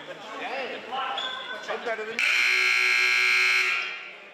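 Gym scoreboard buzzer sounding one loud, steady blast of about a second and a half, starting about two seconds in, after a few voices in the hall.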